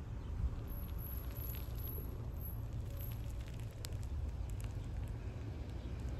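Wind rumbling steadily on the phone's microphone, with scattered faint crackles and clicks.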